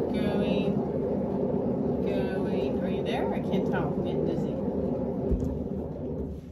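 Steady rumble of a paint spinner turning a large wet-painted canvas at speed.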